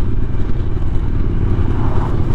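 Suzuki V-Strom motorcycle riding on a loose gravel road: a steady low rumble of engine, wind and tyres on the gravel. An oncoming pickup truck passes close by near the end.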